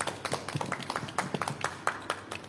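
Small audience applauding: many scattered, irregular hand claps that thin out towards the end.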